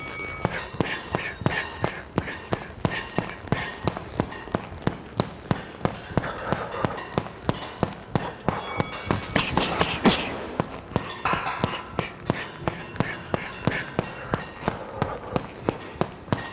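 Boxing gloves striking a heavy punching bag in a steady rhythm of light straight punches, about three a second. About nine seconds in, when the round timer signals, comes a louder, faster flurry of harder punches: the max-effort power combination.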